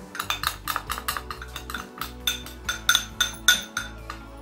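Spoon knocking and scraping against a ceramic bowl to tip turmeric powder into another bowl: a quick, irregular run of sharp clinks.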